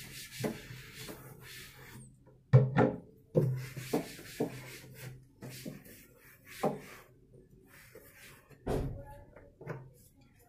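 A cloth wiping the inside of a wooden shelf unit, with a series of knocks and bumps against the cabinet; the loudest knock comes about two and a half seconds in. Background music plays under it.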